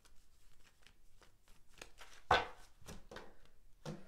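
Oracle cards being shuffled by hand: a run of soft card clicks and flicks, with one louder swish about two seconds in.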